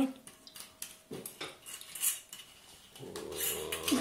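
A scattering of light clinks and knocks of dishes and a bottle on a kitchen worktop, spread over the first three seconds.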